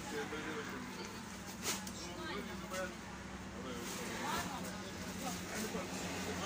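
Faint voices talking in the background over a steady low hum.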